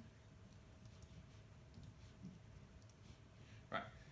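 Faint, scattered clicks from a laptop being operated, over low room hum; a single spoken word comes near the end.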